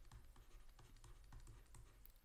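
Faint, irregular light taps, a few a second, from a stylus working on a drawing tablet as words are handwritten; otherwise near silence.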